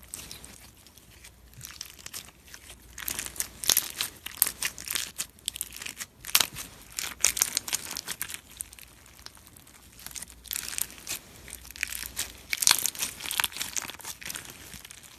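Clear, glittery textured slime squeezed and pressed between fingers, making dense crackling, crunching clicks that come in bursts of a second or two with quieter gaps between.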